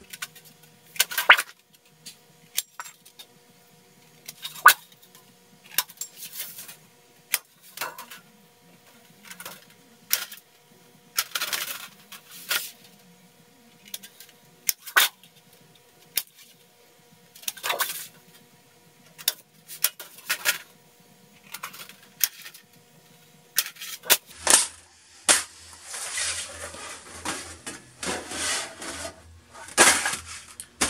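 Hand tin snips cutting galvanized sheet metal: a string of sharp, irregular snips with the rattle of the loose sheet. Near the end comes a longer, denser stretch of metal rattling and scraping.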